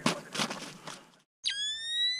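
A few crunches of movement in snow, cut off abruptly a little over a second in. Then an electronic tone starts sharply and glides slowly upward: the logo-intro sound effect.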